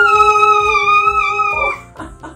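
A long, steady, high-pitched vocal cry, a mock-frightened 'aaah' at the crocodile's 'I'll eat you' joke, held for about three seconds, sagging slightly in pitch and cutting off near the end. Background music with a steady beat plays under it.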